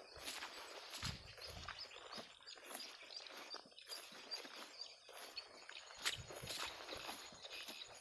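Footsteps through grass and dry brush, an irregular series of soft crunches and rustles as someone walks.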